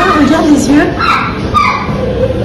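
Several voices in a busy room, including short high-pitched cries whose pitch rises and falls.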